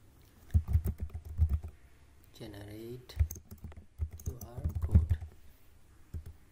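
Typing on a computer keyboard: two runs of quick keystrokes, the first in the first couple of seconds and the second in the latter half. A short murmured voice sounds in between.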